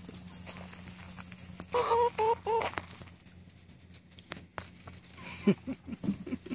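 Three short, loud calls in quick succession from the farmyard poultry about two seconds in, over a steady low hum, with a few softer, lower sounds near the end.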